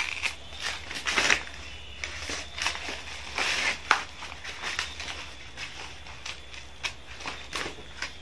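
Dry corn husks being torn and peeled off harvested cobs by hand, making irregular crackling rustles with a few sharp snaps.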